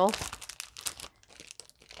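Clear plastic packaging crinkling as cellophane-wrapped planner sticker packs are handled, dense for about the first second, then thinning to a few faint rustles.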